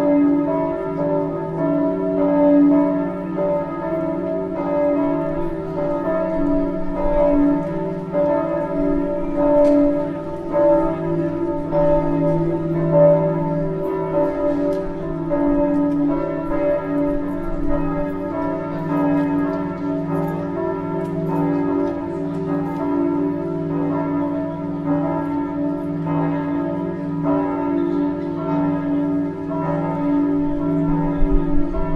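Church bells ringing continuously, their strokes overlapping into a steady, unbroken wash of ringing tones.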